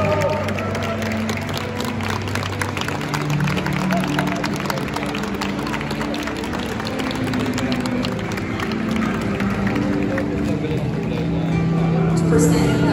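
Live cello and guitar music: the cello holds low notes that change pitch every second or so, with a thin stream of quick clicks above.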